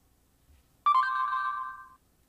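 Google Search app's voice-search chime on an iPhone, one electronic tone about a second long starting suddenly about a second in, signalling that the app has stopped listening and is processing the spoken query.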